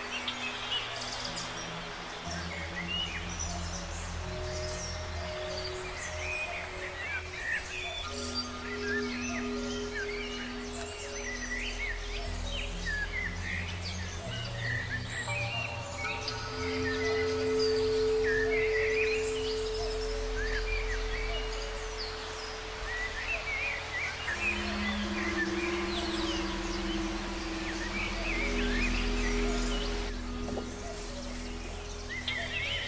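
Slow ambient music of long held notes that shift every few seconds, with birds chirping throughout.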